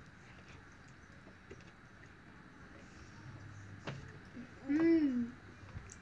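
Quiet room tone, then a child's short hummed or hooted voice sound about five seconds in, rising and then falling in pitch, after a faint click.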